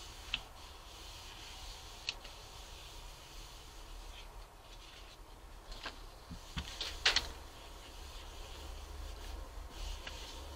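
Hands pressing and rubbing a sheet of paper down onto a gel printing plate to pull a print: faint paper rustling with a few light taps and brushes, the loudest about seven seconds in, over a low steady hum.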